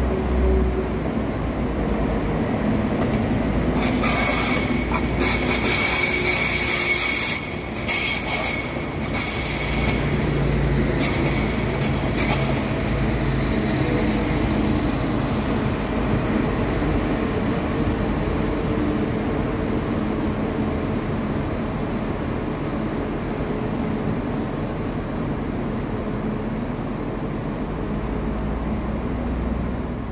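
Transport for Wales Class 197 diesel multiple unit running under power as it passes close and draws away, its diesel engines giving a steady low rumble. High-pitched wheel squeal rings out from about four seconds in and dies away a few seconds later.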